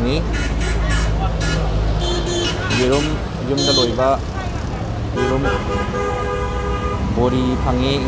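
A vehicle horn honking one steady note for about two seconds, roughly five seconds in, over people talking in a busy market street.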